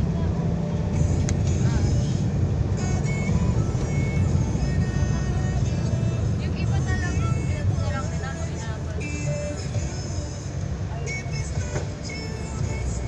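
Steady low rumble of a car's engine and tyres heard from inside the moving car's cabin, with music playing over it.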